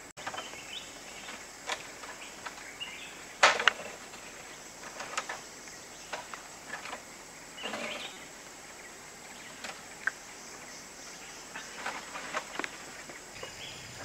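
Quiet outdoor ambience with a thin, steady high insect drone and a few scattered soft clicks and knocks, the sharpest about three and a half seconds in.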